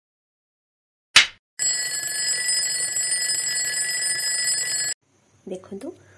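A clapperboard clap, one short sharp snap about a second in, followed by a steady bell-like alarm ringing for about three seconds that stops abruptly.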